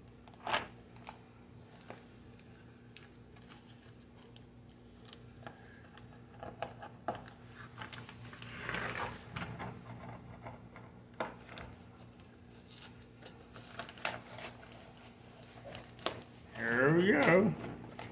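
A package being worked open by hand: scattered light taps and clicks with some rustling of packaging, one louder click at the start and a longer rustle about halfway through. A brief mumble of voice comes near the end.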